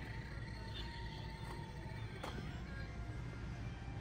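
Faint music with a single soft click a little over two seconds in.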